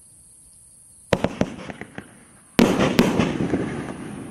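A 500-gram consumer fireworks cake firing: a sharp bang about a second in with a few smaller pops after it, then a louder burst near the middle followed by another bang and a dense run of rapid small pops that fades.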